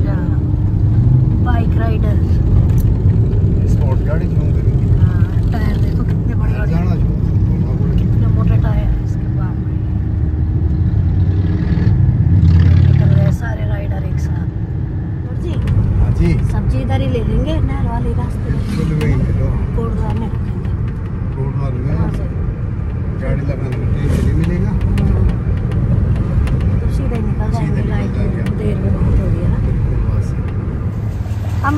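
Car driving on an open road, heard from inside the cabin: a steady low rumble of engine and tyres, which drops suddenly about halfway through. Voices can be heard over it.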